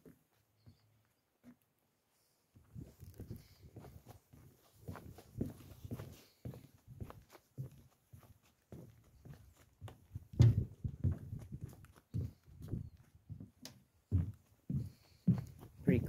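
Footsteps on the wooden planks of a boat dock and gangway, an uneven series of low thuds and knocks that starts a couple of seconds in, with the heaviest steps about two-thirds of the way through.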